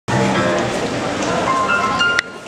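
A live band playing, with a single note held through the last half second.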